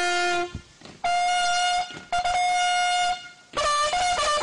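Trumpet sounding a bugle-style call. A low held note is followed by two longer notes an octave higher, then a quicker run of changing notes near the end, with short breaks between the phrases.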